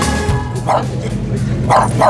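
A small dog barking over background music: one bark about two-thirds of a second in, then two quick barks near the end.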